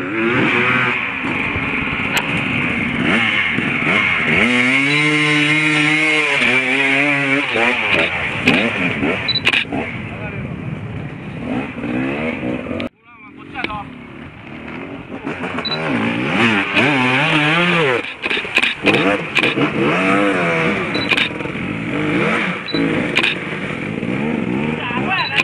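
Off-road motorcycle engines revving and labouring as riders climb a steep dirt bank, their pitch rising and falling, with people's voices mixed in. The sound drops out abruptly about halfway through and comes back gradually.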